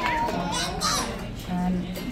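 Indistinct voices, a child's voice among them, over background music.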